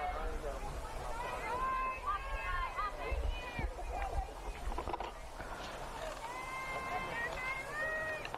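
Softball players' voices on the field and in the dugout, calling out chatter and encouragement between pitches, over an outdoor low rumble.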